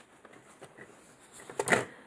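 Faint room tone, then one short rustle of planner pages being handled, about one and a half seconds in.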